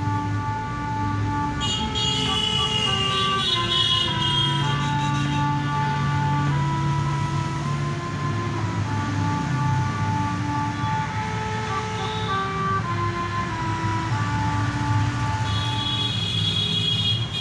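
Harmonium playing a melody, its reeds sounding steady held notes that step from one pitch to the next, with a lower note held under part of the tune.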